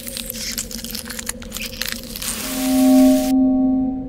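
Electronic intro music: a steady low drone under dense crackling for the first two seconds or so, then a held chord that swells to its loudest about three seconds in and eases off.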